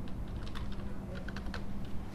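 Computer keyboard typing: a run of irregularly spaced keystroke clicks over a steady low hum.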